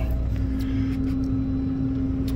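Combine harvester engine running steadily, heard from inside the cab: an even low hum with one steady tone above it.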